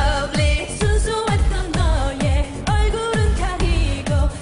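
K-pop girl group's dance-pop song: female voices singing over a beat with a deep, pitch-dropping kick drum about twice a second.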